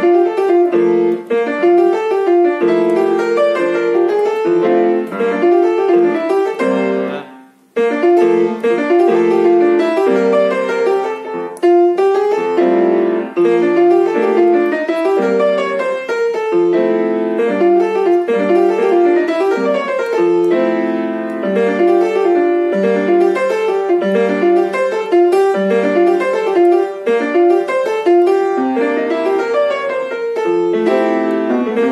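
Piano played with both hands: quick, busy melodic runs and licks over chords, with a brief break about seven and a half seconds in before the playing picks up again.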